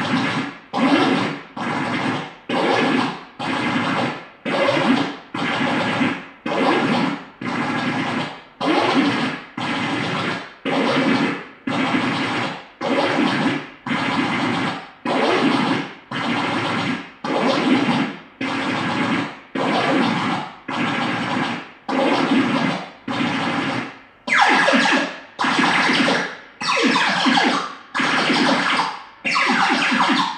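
Korg Kaoss Pad synthesizer playing a steady pattern of noisy electronic pulses, just under one a second, each cut in sharply and fading away. About 24 seconds in the pulses turn brighter and hissier.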